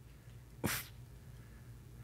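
A quiet pause in a small room with one short, breathy burst from a person about two-thirds of a second in.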